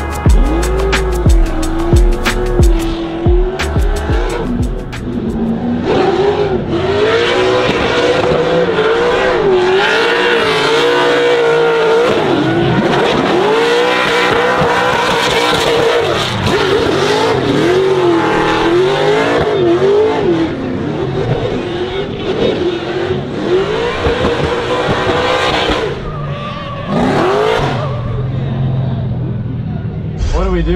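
Nissan 240SX drift car's engine revving up and down as the throttle is worked through a drift run, with the tyres squealing. Music fades out in the first few seconds.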